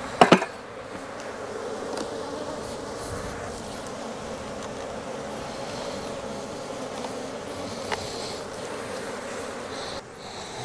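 Honeybees buzzing steadily around an opened hive, a continuous drone. A sharp double knock right at the start, and a faint tick about eight seconds in.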